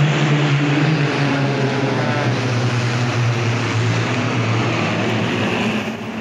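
A formation of single-engine propeller airplanes droning overhead, the pitch of the engines and propellers falling slowly as they pass.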